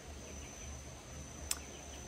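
Steady high-pitched insect trill over a low background hum, with a single sharp click about one and a half seconds in.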